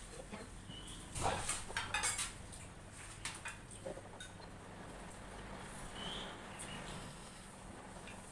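Chopsticks tapping and clinking against small ceramic rice bowls and plates during a meal: scattered light clicks, busiest between about one and two and a half seconds in.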